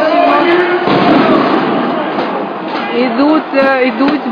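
Several people's voices, some raised, over a continuous din of crowd noise.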